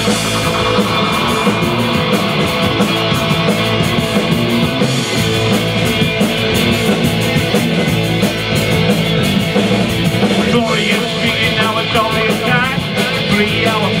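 Live rock band playing an instrumental passage of a song: electric guitars and drums at full volume, with the vocal line coming back in at the very end.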